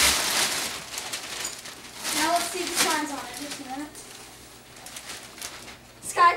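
Gift-wrapping paper rustling and crinkling as it is pulled off a large cardboard box, dying away after about a second. A voice is heard briefly in the middle.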